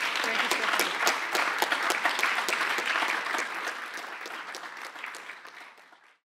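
Audience applauding, many hands clapping, fading out steadily toward the end until it cuts off.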